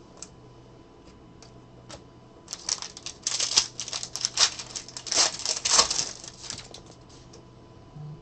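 Foil trading-card pack wrapper being torn open and crinkled by hand, a dense crackling rustle that starts a couple of seconds in and dies away about a second before the end.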